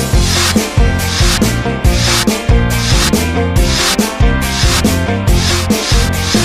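Children's song music with a steady beat, marked by a scratchy, shaker-like percussion stroke about twice a second.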